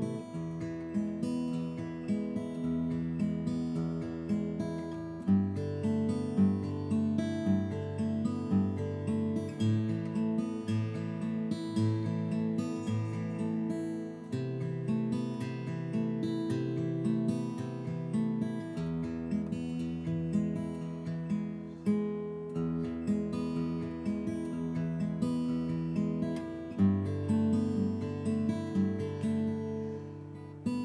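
Acoustic guitar fingerpicked in a steady, repeating arpeggio pattern, a finger-control exercise that alternates the pinky between the B and high E strings. The bass notes change with the chord every few seconds.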